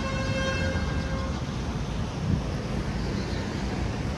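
Street traffic rumble outdoors, with a vehicle horn holding one steady note for about a second and a half at the start.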